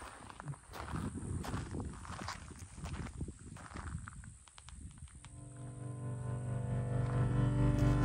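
Footsteps on gravel for about the first five seconds. Then background music fades in with low, sustained bowed-string notes and grows louder.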